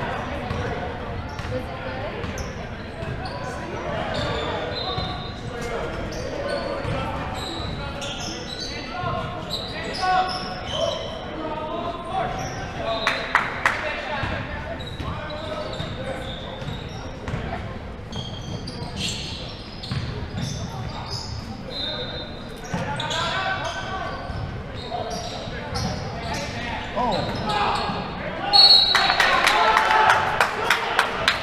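Basketball game in a large gym: a basketball bouncing on the hardwood floor amid indistinct voices of players and onlookers, echoing in the hall. Near the end a ball is dribbled in quick, even bounces.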